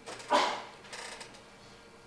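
Slide projector advancing to the next slide: a loud mechanical clunk about a third of a second in, followed by a softer second clunk about a second in.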